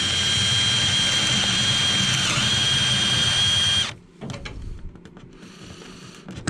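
Cordless drill boring a hole through a wooden framing rib, running steadily with a high whine that dips briefly in pitch as it bites, about two seconds in, then stopping just before four seconds in. Faint clicks and handling rustle follow.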